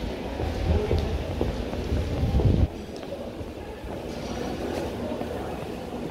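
Subway station concourse ambience: a loud low rumble for the first two and a half seconds that cuts off suddenly, then a quieter steady hum of the hall.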